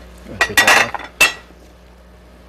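Kitchen utensils and dishes clattering: a quick cluster of clinks about half a second in, then one sharp clink with a short ring just after a second.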